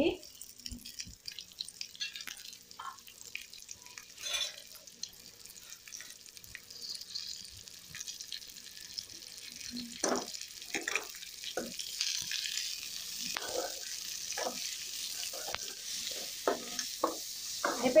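Onions, ginger and tomato pieces frying in oil in a metal kadai, a sizzle that grows louder through the second half. From about halfway in, a ladle scrapes and knocks against the pan in a run of short strokes as the mixture is stirred.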